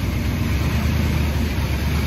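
1959 Ford Fairlane Skyliner's engine idling steadily, a low, even hum.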